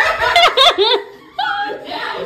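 People laughing in short bursts through the first second, followed by a steady held voice note that begins about one and a half seconds in.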